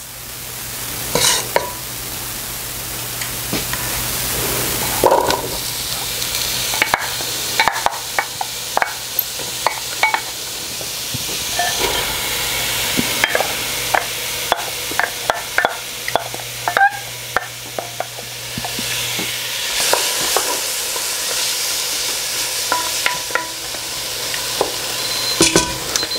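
Diced onions and red bell peppers sizzling in melted butter in a Dutch oven, stirred and pushed about with a wooden spoon that knocks and scrapes against the pot many times. A low steady hum runs beneath it and stops about three-quarters of the way through.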